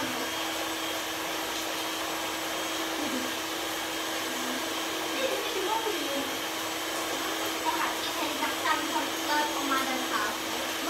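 A small electric motor running steadily, a constant whirring hum, with faint voices over it.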